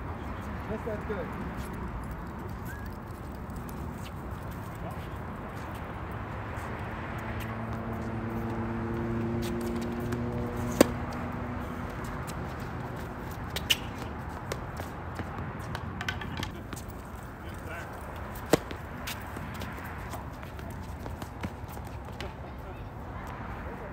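Tennis balls struck by rackets during a rally on an outdoor hard court: sharp pops a few seconds apart, the loudest about eleven seconds in. Under them runs a steady background hum that carries a few low held tones in the middle of the rally.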